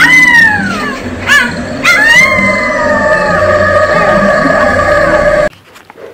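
Canine howling over eerie music: a loud howl rises and falls at the start, two short yelps follow about a second in, then a long howl holds and slowly sinks. Everything cuts off suddenly just before the end.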